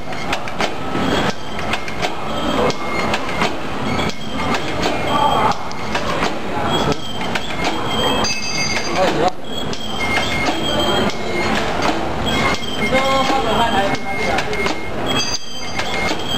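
Automatic bag packing machinery running: a dense, continuous mechanical clatter of rapid strokes and knocks, with short high steady tones recurring every second or so.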